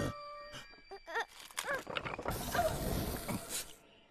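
Soundtrack of an animated film: sustained ringing tones fade out, then a character makes short pained vocal sounds and a hiss follows, lasting about a second, as a corrupted (bled) kyber crystal burns his hand.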